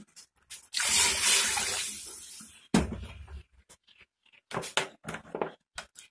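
A glass of water poured into an aluminium pressure cooker that already holds water: a splashing pour starts about a second in, lasts about two seconds and tails off. A few short clatters follow.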